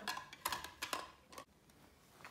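A few short clicks and knocks as toy pizza slices and a toy pizza cutter are handled, in the first second and a half, then quieter.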